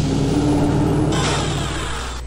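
Electronic sci-fi sound effect: a steady low hum under a hiss, with a brief held tone in the first second, then a swelling whoosh that cuts off suddenly just after the end.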